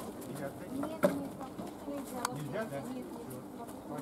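Ostrich chicks giving soft, low cooing calls, with a sharp knock about a second in.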